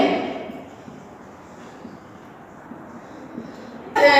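A woman's speech trails off, then a quiet stretch of faint room noise with light marker strokes on a whiteboard.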